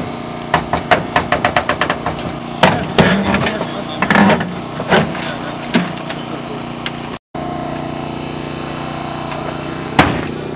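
The small engine of a hydraulic rescue tool's power unit runs steadily. Over it, for the first six seconds, comes a quick run of sharp cracks and snaps as the car's metal and glass give way. Only the engine is left after a short dropout about seven seconds in.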